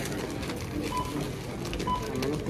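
Checkout barcode scanner beeping twice, short, high electronic beeps about a second in and near the end, over a low murmur of store voices.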